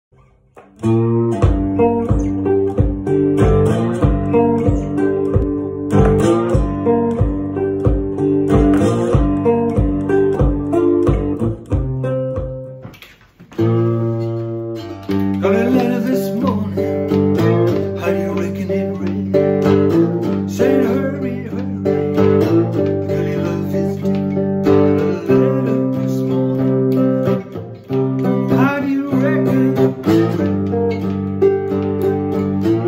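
A cigar box guitar playing a repeating blues riff. For the first twelve seconds a steady low thump beats about twice a second under it; the playing breaks off briefly about 13 s in, then carries on without the thump, with some sliding notes.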